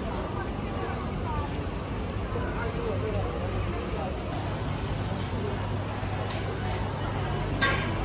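Street ambience: people chatting nearby over a steady low traffic rumble, with one brief sharp clatter near the end.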